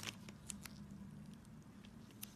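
Faint scattered clicks and light handling noise over a low steady hum: metal forceps and gloved fingers working at a small wound in the palm. A short cluster of clicks comes right at the start, two more about half a second in and one near the end.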